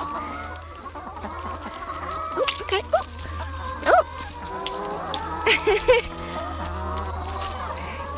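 Brown laying hens clucking as they feed. Their short calls rise and fall, and the loudest come about four and six seconds in.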